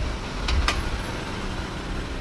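A car driving along a road, its engine running low and steady, with two faint clicks about half a second in.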